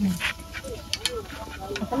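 Chopsticks clicking twice against a metal wok about a second in, over faint sizzling of minced garlic frying in oil.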